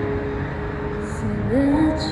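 Start of a song at a street performance: a backing track's held tone fades, then a woman's singing voice comes in about one and a half seconds in, over the rumble of road traffic.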